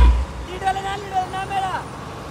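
Loud DJ music with a heavy bass beat, played through a DJ sound system, cuts off suddenly at the very start. After that a person's voice is heard over low, steady road and vehicle noise.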